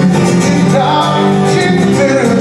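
Acoustic guitar strummed live, with a man singing along into the microphone.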